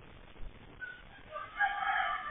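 A rooster crowing: one long call that begins about a second and a half in and carries on past the end, after a soft knock about half a second in.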